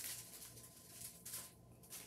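Faint rustling of paper wrapping as a rolled canvas is handled on a table, with a few brief soft rustles around the middle.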